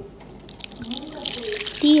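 Water poured and splashing onto grated coconut in a stainless wire-mesh strainer, starting about a quarter second in and growing louder. This is the step of soaking the coconut before squeezing out the coconut milk.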